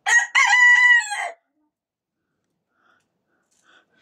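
A bantam rooster crowing once: a single short, high-pitched crow just over a second long at the start, followed by quiet.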